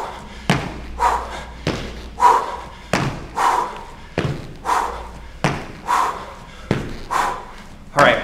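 Sneakered feet landing with a thud on a wooden floor during barbell jump squats, a regular beat of about one landing every 1.2 seconds. Each landing is followed by a hard, breathy exhale.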